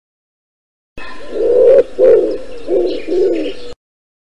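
A pigeon cooing: four low coos in a row that start suddenly about a second in and cut off suddenly before the end.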